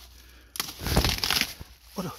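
Crunching and crinkling of soil and a black plastic planting polybag being handled as soil is put in around a banana seedling, a burst lasting about a second that starts about half a second in.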